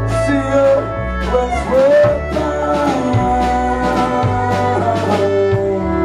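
Live band playing an instrumental passage: fiddle and pedal steel guitar holding and sliding between notes over upright bass, acoustic guitar and a steady drum beat.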